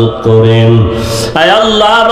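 A man's voice chanting a supplication in a drawn-out, sing-song tone, holding one long note, then pausing for breath about a second in before going on.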